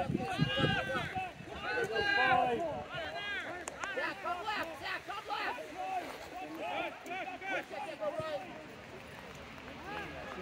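Several people shouting and calling across an open rugby pitch, the voices overlapping and the words unclear. The calls are loudest in the first couple of seconds and die down near the end.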